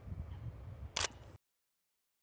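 A single camera shutter click about a second in, over a low outdoor rumble. The sound then cuts out to dead silence.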